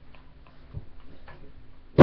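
Quiet, steady hum of a plugged-in electric guitar rig with a few faint scattered clicks of the guitar being handled. A loud distorted electric guitar chord strikes right at the very end.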